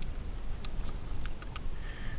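A few faint, sparse clicks and ticks from a carbon fiber travel tripod's ball head being handled, over a steady low rumble.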